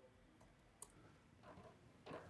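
Near silence: room tone, with one faint, sharp click a little under a second in, from the laptop as the login form is submitted.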